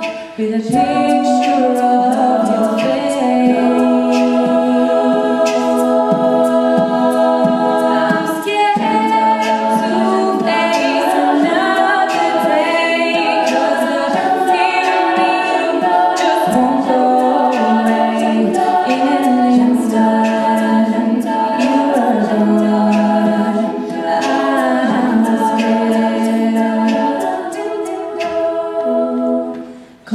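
All-female a cappella group singing held, shifting chords with no spoken words, over short sharp hisses that keep a steady beat. The sound dips briefly just before the end.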